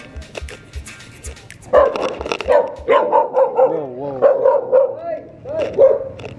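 A dog barking in a loud run of short calls, several drawn out into wavering, whining howls, starting about a third of the way in. Background music with a beat runs under it and ends about halfway.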